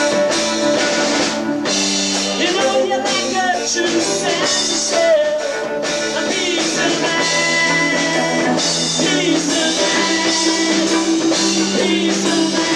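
Live rock band playing: acoustic and electric guitars over a drum kit, at a steady, loud level.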